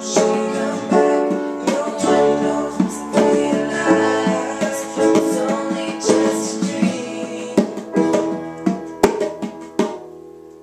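Acoustic guitar strummed together with a grand piano and hand-played bongos, closing out a pop song cover. Near the end, sharp strikes come about twice a second before the playing stops and the last chord rings.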